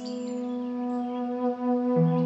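Slow new-age meditation music: a flute holds a long steady note over sustained low tones, swelling in suddenly at the start.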